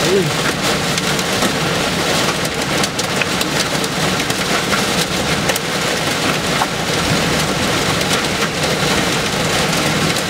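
Heavy wind-driven rain pelting a vehicle, heard from inside the cabin: a dense, steady rush with many sharp ticks of drops striking the windshield and body.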